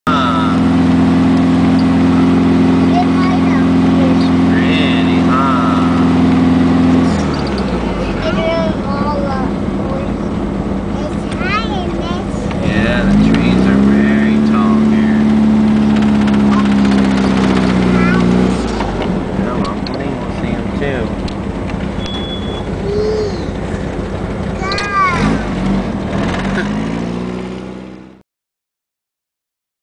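VW Super Beetle rat rod's engine heard from inside the car while driving, a steady drone that drops off at about seven seconds, climbs in pitch again around thirteen seconds as it pulls, and eases near nineteen seconds. Voices talk over it.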